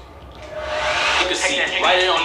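Handheld hair dryer blowing steadily, drying hair; its steady rushing comes up about half a second in.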